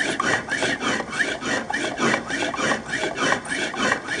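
Homemade lung-powered reciprocating air engine running: quick alternating breaths through the mouthpiece drive a sanded styrofoam-ball piston back and forth in a cut-off soda-bottle cylinder. The result is a fast, even rasping rhythm of several strokes a second.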